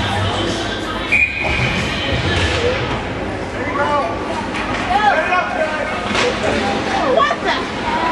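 Indistinct voices of spectators echoing in an indoor ice rink during a youth hockey game, with a short high steady tone about a second in.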